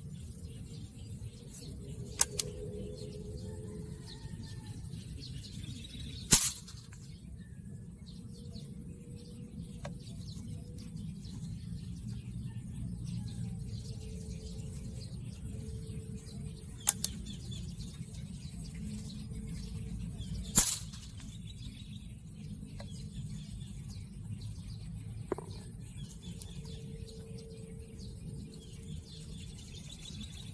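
Two sharp shots from an Ape Alpha .177 PCP air rifle, about fourteen seconds apart. Each is preceded by a lighter click from the rifle's action a few seconds before it. A steady low rumble runs underneath.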